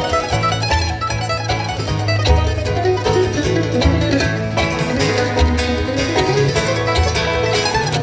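Bluegrass band playing an instrumental break with no vocals: rapid mandolin picking over upright bass notes, with banjo in the mix.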